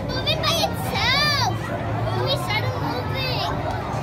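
Excited children shouting and squealing over a general hubbub, with one loud high-pitched squeal about a second in that rises and then falls.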